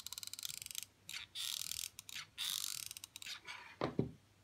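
Hot glue gun trigger being squeezed, its glue-stick feed ratcheting in a fast run of clicks for about the first second. Short rustling and handling noises follow, with a knock near the end.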